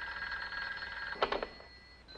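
A telephone bell rings steadily and cuts off a little over a second in, when the phone is answered. A brief, louder sound follows right after the ring stops.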